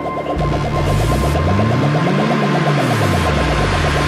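Progressive house music in a beatless passage: a fast pulsing synth pattern over a deep bass line that comes in about half a second in, with a pitch sweep that rises and then falls through the middle.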